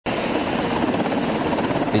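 UH-60 Black Hawk helicopter running on the ground: a steady, dense noise with a low wavering tone underneath.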